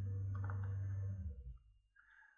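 A steady low hum that fades away about a second and a half in, with faint computer-mouse clicks.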